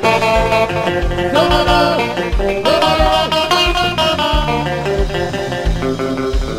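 A live band playing: electric guitar over bass and a steady kick-drum beat, with sliding melodic notes.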